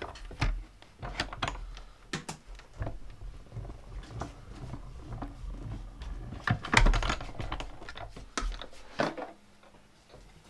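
A hand-cranked die-cutting and embossing machine in use: plastic plates clack as they are handled, then the crank is turned to feed the plate sandwich with a 3D embossing folder through the rollers. It gives an irregular run of clicks and creaks, loudest and densest about seven seconds in.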